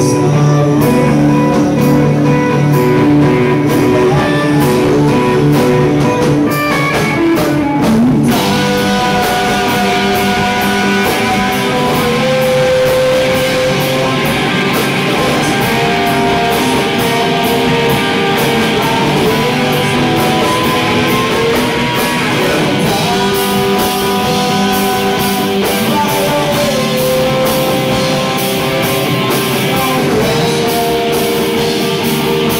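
Live rock band playing, electric guitar and drum kit to the fore, with the drums picking up into a steady full-band beat about eight seconds in.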